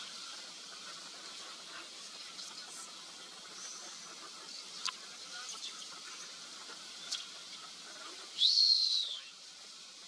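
Steady background hiss with a few faint clicks. About eight and a half seconds in comes one loud, high whistle that rises and then falls, lasting under a second.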